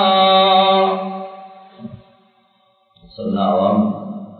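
A man's voice chanting, holding one long, steady note that fades away about two seconds in. After a brief silence he starts speaking again.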